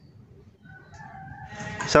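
Faint animal call in the background, growing louder toward the end and cut off by a sharp click.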